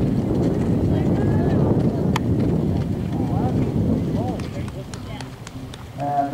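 A horse cantering on arena footing, its hoofbeats mixed into a steady low rumble, with faint voices of onlookers. The rumble fades about four seconds in, and a few light clicks follow.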